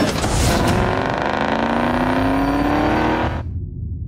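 Car engine accelerating hard under full throttle, its note rising steadily in pitch, then cut off suddenly about three seconds in.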